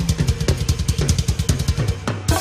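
Live band music dominated by fast, busy drumming, many strokes a second, over a bass line that steps down in pitch.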